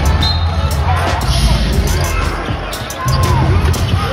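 A basketball being dribbled on a hardwood court, with short sneaker squeaks, arena crowd noise and music underneath.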